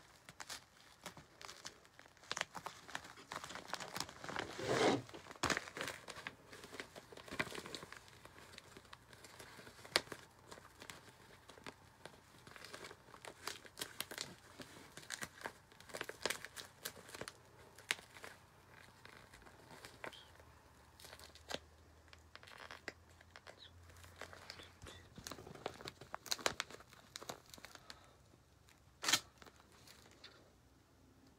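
Duct tape being pulled and torn while a plastic shopping bag crinkles: irregular short rips and crinkles, loudest about five seconds in.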